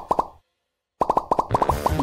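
A quick run of cartoon plop sound effects, about a dozen pops a second, broken by a half-second of dead silence, then a second short run of pops.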